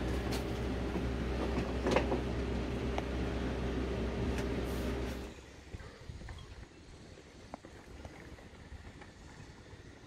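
Steady low mechanical hum with a single knock about two seconds in. About five seconds in the hum cuts off and gives way to faint outdoor background.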